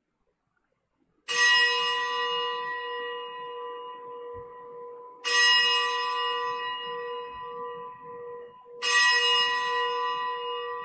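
A consecration bell struck three times, each stroke ringing out and fading before the next, rung at the elevation of the host just after the words of consecration at Mass. The strokes are a few seconds apart, and the first comes about a second in.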